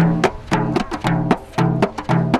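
Seguidor, the large plena pandereta (a hand-held frame drum), played by hand in its fixed, never-changing base pattern: a deep, pitched stroke about every half second with short, sharp slaps between.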